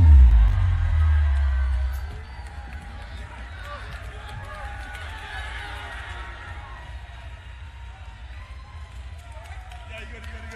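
Band music over a concert PA stops, its heavy bass dying away about two seconds in. It leaves a large crowd talking and calling out.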